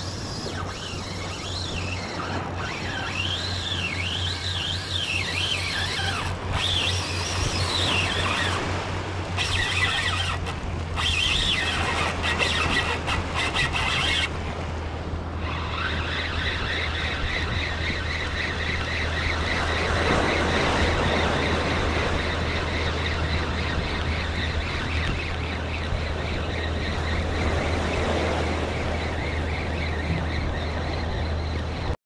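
A spinning fishing reel being cranked on a retrieve, with a rapid, even ticking from the reel in the second half. Earlier there is a high squeal that rises and falls repeatedly.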